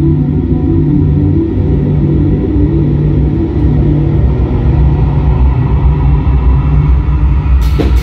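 Live rock band with electric guitar, bass guitar and keyboard playing a loud, low, droning passage of held notes that shift every second or so. Near the end the drums crash in and the full band starts up.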